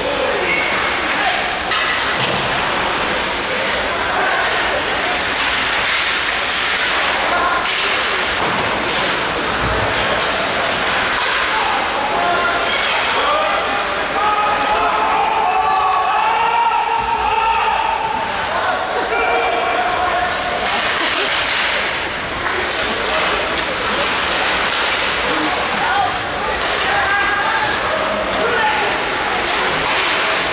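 Rink sound of an ice hockey game: a steady hubbub of spectators' voices, busiest midway, over a noisy background with scattered sharp knocks of sticks and puck against the boards.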